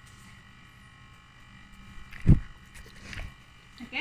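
A large dog moving about on a tile floor right beside the microphone: faint claw ticks, then a heavy thump about two seconds in and a softer one about a second later as the dog bumps against the camera.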